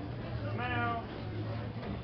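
A short high-pitched, meow-like cry about half a second in, lasting about half a second, over background chatter and a steady low hum.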